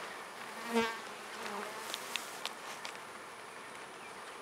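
Honeybees buzzing as a steady hum around hive boxes opened for a split. A short louder sound comes about a second in, and a few faint clicks follow a second later.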